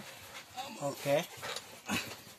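A man's voice: one short call or grunt with falling pitch about a second in, and the start of another near the end, quieter than the talk around it.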